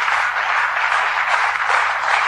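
Studio audience applauding, a dense, even clatter of clapping heard on an old radio broadcast recording with a faint steady mains hum beneath it.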